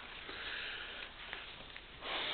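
A man breathing in softly through his nose, a faint sniff-like inhale that fades after about a second.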